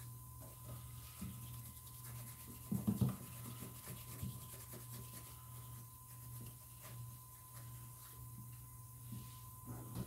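Faint scrubbing of a paintbrush dry-brushing paint onto a latex mask, over a steady low hum and a thin steady whine. A brief low sound stands out about three seconds in.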